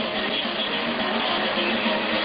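Old, band-limited recording of Turkish aşık folk music in a gap between sung lines, with the accompaniment carrying on quietly under a steady hiss.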